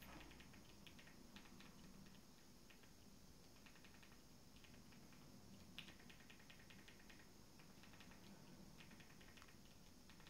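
Faint clicking of a Fire TV Stick remote's buttons pressed in quick runs to move across an on-screen keyboard, with one slightly louder click about six seconds in, over near silence.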